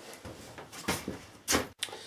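A few light knocks and clicks of things being handled on a wooden workbench, the loudest about one and a half seconds in, with a brief sudden dropout just after.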